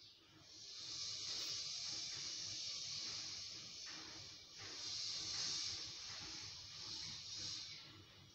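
A steady high hiss, rising in twice over two long swells of three to four seconds each, then stopping shortly before the end.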